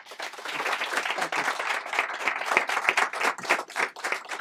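A small audience applauding, starting suddenly and going on steadily as many hands clap.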